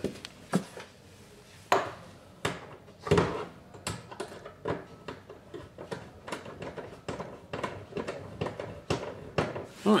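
Hand-fitting a washer and nut onto the baffle stud inside a fuel tank: irregular clicks, knocks and rubbing, with a few louder knocks in the first three seconds.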